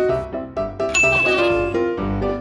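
Cartoon 'ding' sound effect, one bright ringing tone about a second in, over background music: the 'idea' cue for a lightbulb moment.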